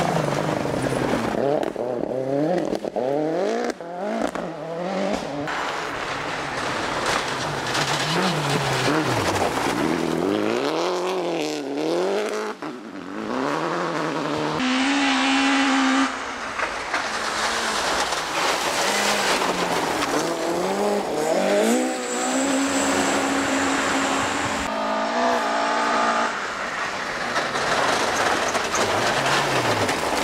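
Rally cars driven hard on a gravel forest stage, one after another: engines revving up through the gears and dropping back each time they lift off, held at steady revs for a moment twice in the middle, over tyre and gravel noise. A Ford Fiesta rally car passes at the start and a Mk2 Ford Escort rally car comes through at the end.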